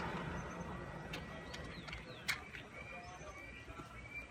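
Faint outdoor ambience: a low rumble, like a passing vehicle, fades away, with a few faint bird chirps and some light sharp clicks, the clearest a little past two seconds in.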